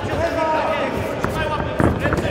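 Shouting voices of the crowd and corners during a cage fight, with dull thuds of strikes and footwork on the mat. A loud thud of a strike lands near the end.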